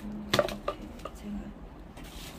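A few sharp clicks and taps of plastic being handled, bunched in the first second, as packaged items and bottles are picked up and moved.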